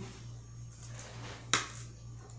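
A cut piece of homemade glycerin-soap toilet cake is set down on a tray with one sharp tap about one and a half seconds in, after a few faint scrapes. A steady low hum runs underneath.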